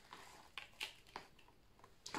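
Near silence with a few faint soft taps as a spoonful of dark brown sugar is tipped onto sliced apples in a bowl.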